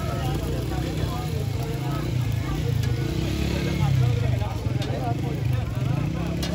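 Busy street ambience: a steady low rumble of nearby vehicle engines under background chatter, with a few light metal clicks of a spatula against a flat iron griddle.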